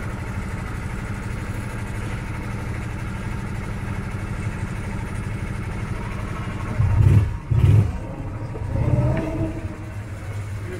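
Small engine of a track ride car idling steadily, with two short, loud revs about seven seconds in and a smaller rise in engine noise near the end.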